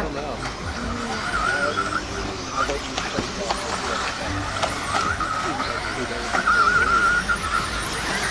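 Electric 1/10-scale 4WD buggies with 13.5-turn brushless motors racing, their motors giving a wavering whine that rises and falls and comes and goes several times as the cars accelerate and pass, with a few sharp clicks and knocks.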